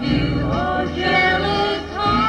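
Music: a woman singing a slow ballad with instrumental accompaniment, her voice sliding between held notes.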